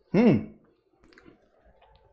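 A man's short wordless vocal sound, one syllable whose pitch rises then falls, followed about a second later by a few faint clicks.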